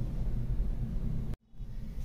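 Steady low background rumble and hum with no speech, which cuts out suddenly for a split second about one and a half seconds in and then resumes.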